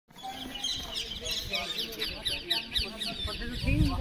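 Many birds chirping and calling together: a dense, continuous chatter of short, quick, falling chirps, with people's voices beneath.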